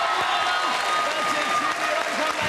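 Studio audience applauding a correct answer that puts the contestants through to the final.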